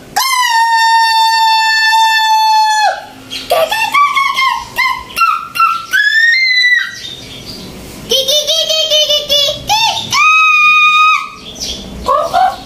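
A man's wordless, high-pitched falsetto vocalizing: one long held note of about three seconds, then short wavering and sliding notes, a quick run of warbling notes, and another held note near the end.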